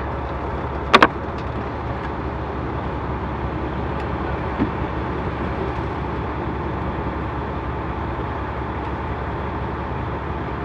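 A semi-truck's diesel engine idling steadily, heard from inside the cab, with a sharp double click about a second in.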